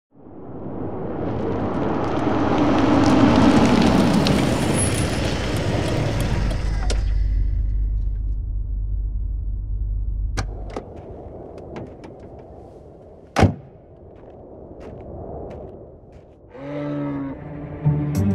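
A car drives up with a rushing noise that swells and fades, then its engine runs low and steady until it cuts off about eleven seconds in. A single loud thump follows about two seconds later, a car door shutting, then a few small knocks, and music comes in near the end.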